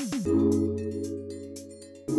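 Background music: held synth chords over a light ticking beat, with a quick downward pitch sweep at the start as a new chord comes in.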